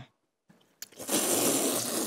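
A person slurping noodles in one long, noisy slurp that starts about a second in.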